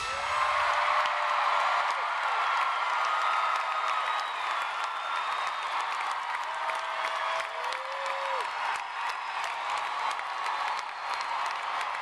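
Large arena concert crowd cheering and clapping as a song ends. Dense clapping runs under a roar of voices, and a few long, high-pitched screams stand out over it.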